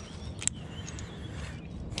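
A single sharp metallic click about half a second in: a steel carabiner clipping onto the eye bolt of a magnet-fishing magnet. Faint outdoor background noise runs beneath it.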